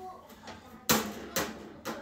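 Two sharp knocks about half a second apart, the first a little before the middle.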